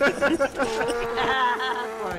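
Human voices only: a person laughing, with wavering, voiced laughter.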